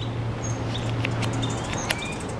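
Hummingbird calling: a scatter of short, high-pitched chips and ticks, over a low steady hum that stops about a second and a half in.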